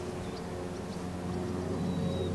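Steady low mechanical hum, like a running engine or motor, with a few faint high chirps over it.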